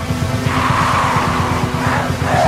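Black metal recording: rapid, dense drumming under a wall of distorted, noisy guitar.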